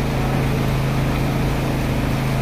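A steady low hum with a constant pitch, like a machine running nearby.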